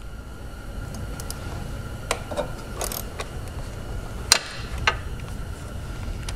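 Metal hand-tool clicks as a ratchet with a Torx T30 bit loosens a screw from a plastic valve cover: a few separate sharp clicks, the loudest a little past four seconds in, over a low steady background rumble.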